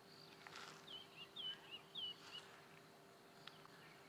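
Faint bird chirps: a quick series of short, high, down-slurred notes from about a second in, over a faint steady hum.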